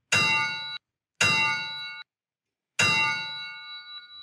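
Title sting of three metallic clangs, one for each word of the show's title card. The first two are cut off sharply after under a second; the third rings on and fades.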